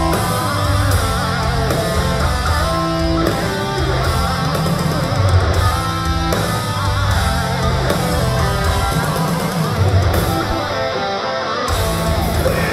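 Metalcore band playing live: distorted electric guitars, bass and drums, heard from the audience through an arena-filling PA. There is a brief stop about a second before the end, then the band comes back in.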